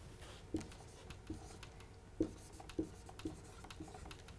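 Marker writing on a whiteboard: a handful of faint, short pen strokes as the figure and word are written.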